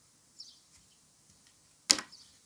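A utility knife blade cutting into a bar of soap, one sharp, crisp crack near the end. Less than half a second in, a sparrow chirps once, a short falling note.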